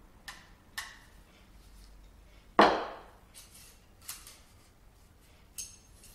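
A plane blade and its cap iron being taken apart with a screwdriver: a few light metal clicks, one louder sharp clunk about two and a half seconds in, then more light metallic clicks as the steel parts are handled.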